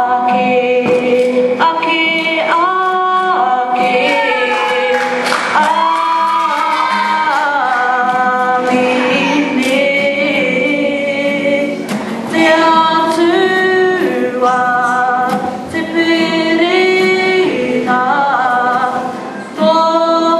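A woman singing a slow melody solo into a microphone, in phrases of long held notes that step up and down in pitch, with short breaths between them.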